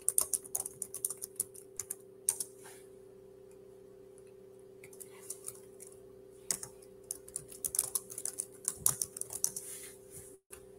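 Typing on a computer keyboard in two bursts of quick key clicks, the first over the opening few seconds and the second from about six and a half seconds to near the end, with a faint steady hum underneath.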